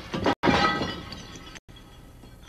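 A sudden crash about half a second in, followed by ringing, tinkling tones that fade away over about a second.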